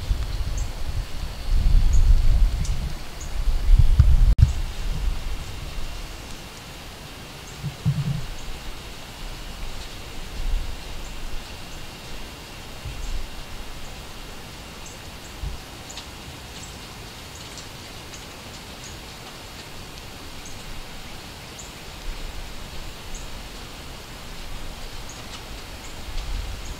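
Outdoor ambience: gusts of wind rumbling on the microphone, strongest in the first five seconds, then a quieter steady hiss with faint scattered high ticks.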